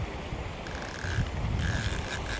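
Wind buffeting the microphone as an uneven low rumble, with a thin, steady high whine that comes in about half a second in and breaks off and returns a few times.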